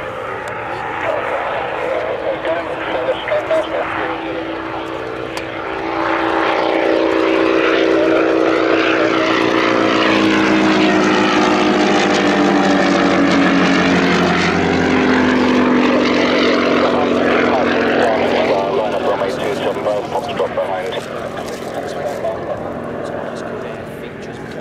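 Hunting Percival Piston Provost T.1's Alvis Leonides nine-cylinder radial engine at full take-off power. It grows suddenly louder about six seconds in as the aircraft lifts off and comes past. Its pitch falls steadily as it goes by, and it fades as the plane climbs away.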